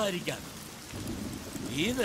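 Steady rain falling, heard through a short lull in the dialogue.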